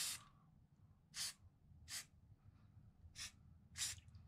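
Aerosol spray paint can hissing in four short bursts, each a fraction of a second long, as paint is sprayed onto water in a pan.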